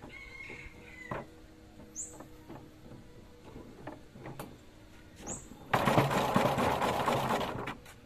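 Homemade hand-cranked honey extractor in a plastic bucket: a few wooden knocks and clicks as the comb frames are handled in the basket, then, near the end, about two seconds of fast, loud rattling as the crank spins the frames. A few short high bird chirps are heard.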